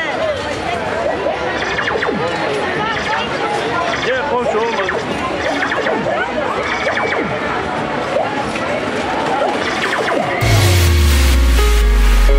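Fairground crowd: many voices talking and calling out over one another. Near the end, loud electronic music with heavy bass starts suddenly.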